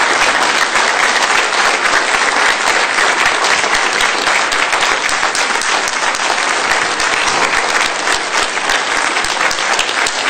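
Audience applauding, many hands clapping steadily, easing slightly near the end.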